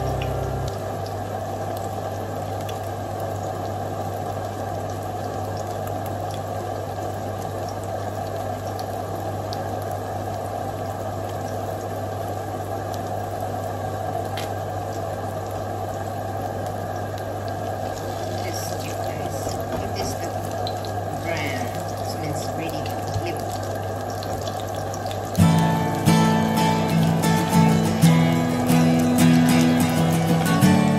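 Grated zucchini and potato patty sizzling steadily in shallow oil in a stainless steel frying pan, over a low steady hum. About 25 seconds in, guitar music comes in over the frying.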